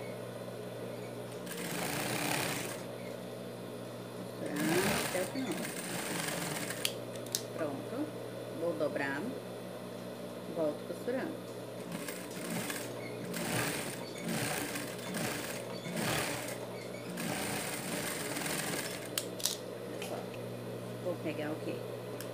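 Industrial lockstitch sewing machine stitching fabric in repeated short bursts, its motor humming steadily between them.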